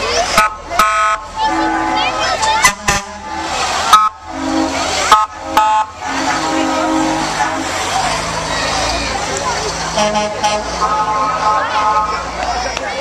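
Fire engine sounding a run of short, loud horn blasts as it passes, about half a dozen in the first six seconds. Crowd chatter runs underneath.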